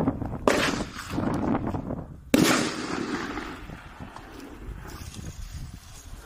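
A 1.5-inch consumer firework shell from a Raccoon Fireworks Novaburst assortment: a sharp bang about half a second in as it lifts off, then a louder burst a couple of seconds in, followed by a fading crackle.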